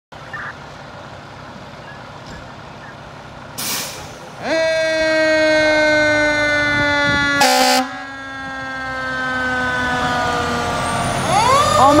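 Fire engine leaving the station on a call. A short hiss is followed by a long, loud horn-like tone of about three seconds, a second hiss, and then a siren whose pitch sinks slowly before breaking into quick rising and falling wails near the end.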